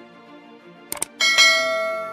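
Subscribe-button sound effect: a quick pair of mouse clicks about a second in, followed by a bright notification-bell chime that rings on and slowly fades.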